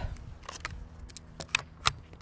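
Metallic clicks and rattles of a Kidd 10/22 rifle's action being worked by hand to clear a multiple feeding jam: about five short, sharp clicks at uneven intervals.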